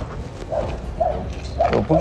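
A person's short murmured voice sounds, with speech beginning near the end, over a steady low hum.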